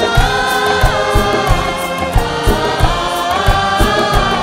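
Live Hindi film song played by a large stage orchestra: a chorus sings long held notes over dholak and percussion beating about three times a second.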